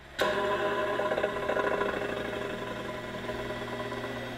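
Playback of a whoopee-cushion 'scream' recorded inside a vacuum chamber: a buzzy, fart-like tone that starts abruptly and slowly fades away. It is audible because the last breath of air in the cushion carries the sound out of the chamber.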